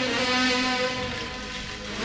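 Live band music with a violin-like melody line playing sustained notes; the playing thins out and drops in loudness from about a second in until near the end.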